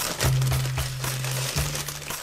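Crumpled packing paper crinkling and rustling as a small model railroad car is unwrapped by hand, over background music with low held bass notes.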